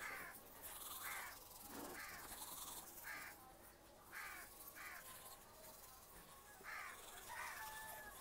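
Faint crow caws: a series of short calls, irregularly spaced, some close together in pairs, over a quiet background.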